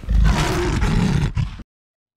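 A big-cat roar sound effect: one loud roar lasting about a second and a half that cuts off suddenly.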